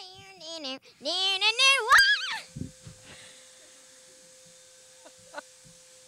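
A girl's voice in wavering, warbling vocal whoops, rising in pitch, for the first two seconds or so. Then a click, and a faint steady hum with a hiss.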